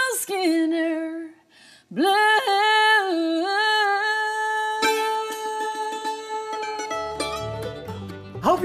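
A woman singing unaccompanied in long held notes, one lasting about five seconds. A mandolin starts picking quick notes under the last of it near the end.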